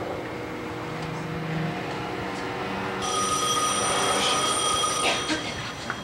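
A steady noise of a potter's wheel turning under a large clay pot being thrown. Halfway through, a high ring made of several steady tones starts suddenly, lasts about two seconds, then stops.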